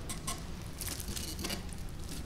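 Gloved hands pressing a succulent rosette into potting soil in a pot: a few short, soft rustles and scratches of soil and glove, over a low room hum.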